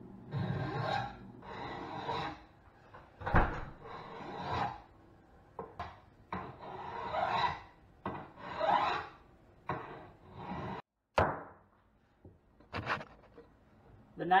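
Wood rasp worked in long scraping strokes, about one a second, along the back of a homemade longbow's wooden limb, beveling it to 'trap' the limbs and lower the draw weight. A sharp knock about three and a half seconds in.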